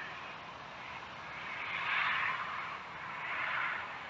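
Outdoor background noise with two soft rushing swells, one about halfway through and a second shorter one near the end.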